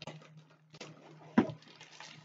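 Plastic packaging crinkling and a cardboard box being handled as a bagged kit is lifted out, in short separate rustles with one sharper snap about one and a half seconds in, over a low steady hum.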